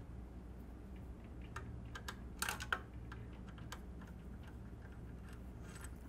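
Faint, scattered small clicks and taps of a Torx screwdriver and small screws working on the metal-and-plastic claw of a telemark binding as the screws are taken out, with a cluster of clicks about two and a half seconds in, over a low steady hum.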